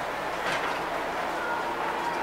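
Steady outdoor city background noise, an even hum like distant traffic, with faint voices.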